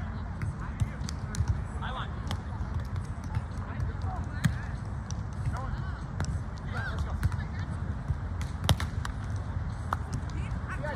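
Outdoor ambience of sand volleyball: distant players' voices and scattered sharp smacks of volleyballs being hit, over a steady low rumble. The two loudest smacks fall about halfway and near the end.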